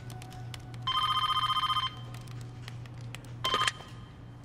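Telephone ringing on an outgoing call: one trilling ring about a second long, then a second ring cut short near the end as the line is answered. A steady low hum runs underneath.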